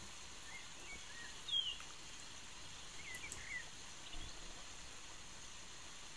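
Birds chirping faintly, a few short calls over a steady hiss, from a played-back relaxing nature-sounds recording of a forest stream.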